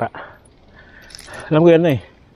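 A person's voice in two short utterances, one at the very start and a longer one from about one and a half seconds in, with a brief light metallic jingle a little past a second in.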